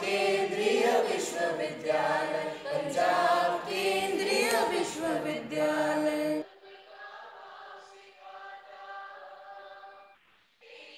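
The university anthem sung by a choir. About six and a half seconds in, the sound drops sharply in level and turns thin, losing its low end, but the singing carries on.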